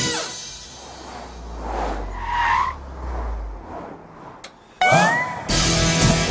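Open-top sports car driving, with a low engine rumble and a short tyre squeal about two seconds in. Background music starts near the end.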